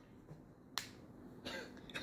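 Near silence broken by a single sharp click a little under a second in, with a faint soft sound near the end.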